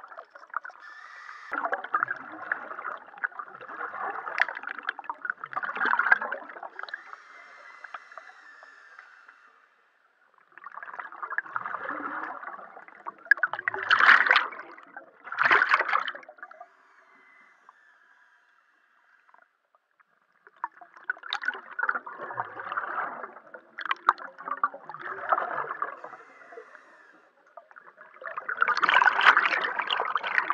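Underwater scuba breathing: the regulator's exhaust bubbles gurgle past the diver in long exhalations of several seconds, with short quiet gaps between them while he inhales. A sharper, louder pair of bubble bursts comes about halfway through.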